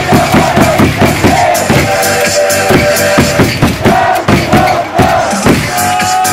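Baseball cheer music from the stadium loudspeakers with a fast, steady beat and a held melody line, the crowd cheering along under it.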